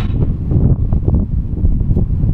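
Wind blowing across the camera microphone, a loud noise weighted to the low end.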